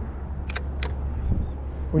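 Steady low wind rumble on the microphone, with two sharp clicks close together about half a second in.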